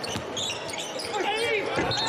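Basketball court sound with no commentary: sneakers squeaking and the ball on the hardwood under arena crowd noise. A referee's whistle starts right at the end, calling the foul.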